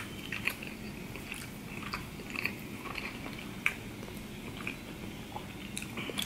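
A person chewing sushi rolls with the mouth closed: soft, wet mouth clicks scattered throughout, with one sharper click at the very start.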